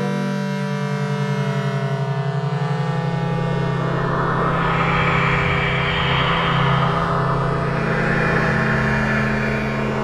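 Algorithmic electroacoustic music made in SuperCollider: a sustained low drone under layered held tones, wavering quickly in the first few seconds, with a hiss-like upper layer that swells up and fades twice.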